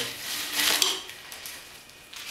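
Doubled-over Danish paper cord being pulled through the woven seat, rubbing against the cord and frame, loudest for about half a second starting about half a second in, then fading.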